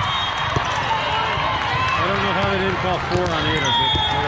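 Indoor volleyball match in a large echoing hall: many voices, short squeaks of sneakers on the court floor, and a sharp knock of the ball being played about half a second in.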